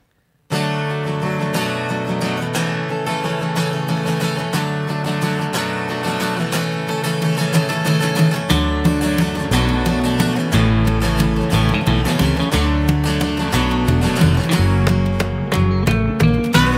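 A small acoustic band starts a song's instrumental intro about half a second in, led by a strummed acoustic guitar with electric guitar. An upright bass comes in at about eight and a half seconds.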